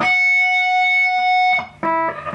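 Electric guitar holding one high note for about a second and a half, the fourteenth-fret note on the high E string ending a picked run. It breaks off, and a lower note is picked near the end.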